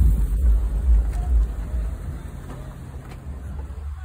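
Wind buffeting a phone's microphone: a loud, uneven low rumble, strongest in the first two seconds and easing after that.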